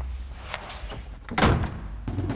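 A wooden door slammed shut, one loud bang about a second and a half in.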